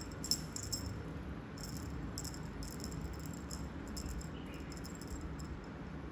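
Small bell on a feather wand cat toy jingling in short bursts as the toy is shaken: a high, tinkling rattle near the start, again for a second or so around two to three seconds in, and briefly near five seconds.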